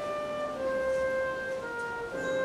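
Flute playing a slow melody in long held notes over piano accompaniment.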